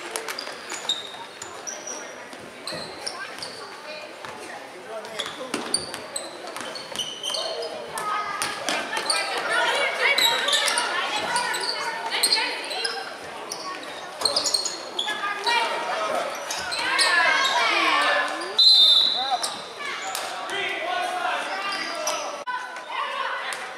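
Basketball game sounds echoing in a gym: the ball bouncing on the hardwood floor in repeated sharp knocks, sneakers squeaking, and spectators' voices calling out, louder in the second half.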